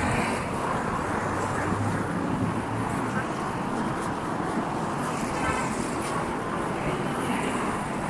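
Steady street traffic noise from a busy city avenue, with cars passing and passers-by's voices in the background.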